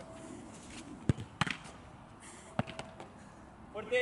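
Sharp thuds of a football being struck during goalkeeper shooting drills: a loud one about a second in, a second just after, and a fainter one past halfway.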